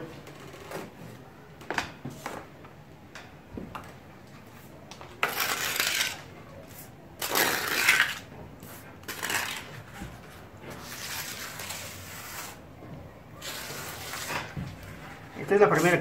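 Steel mason's trowel scraping fine cement-sand plaster across a concrete ceiling slab, in four long strokes about a second each. A few light metal clinks of the trowel come in the first few seconds.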